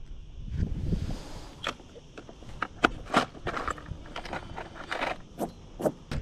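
Hands handling fishing tackle on a paddle board while changing lures: a run of irregular sharp clicks and light scrapes, with a brief rush of noise about a second in.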